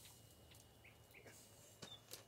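Near silence, with a few faint short bird chirps about a second in.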